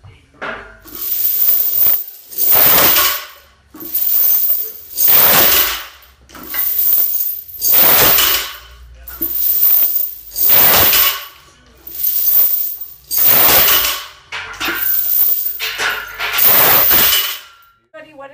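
Steel lifting chains hanging from a loaded barbell rattling and clinking through six deadlift reps: two bursts of jingling per rep, as the chains rise off the floor and as they pile back down, about every two and a half seconds.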